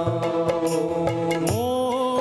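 Indian devotional music: held melodic tones over light, regular percussion strikes, with a new phrase sliding in about one and a half seconds in.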